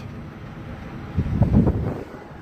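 Wind buffeting the microphone in a rough low-pitched burst lasting just under a second, starting about a second in.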